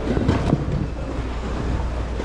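Leather handbag being handled and turned over close to the microphone: irregular rubbing and rustling, strongest in the first half-second, over a steady low rumble.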